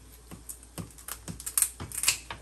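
Kitchen shears snipping through lobster shell in a quick run of sharp clicks and crunches, coming closer together and louder toward the end.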